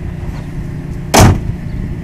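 The hood of a 2010 Ford F-350 Super Duty pickup slammed shut once, a single loud bang about a second in.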